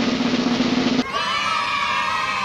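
A drum-roll sound effect that breaks off about a second in into a held, steady chord.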